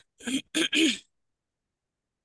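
A brief vocal sound from a person, in three quick pieces lasting under a second, heard over a video-call connection. It reads most like a throat clearing.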